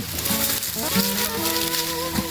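Dry leaf litter and palm fronds crackling and rustling underfoot and against the body while walking through dry scrub, under background music with steady held notes.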